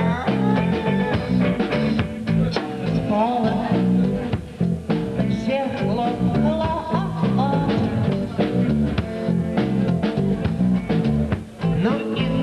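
Live rock band playing a song: electric guitar, bass and drums, with a man singing into the microphone.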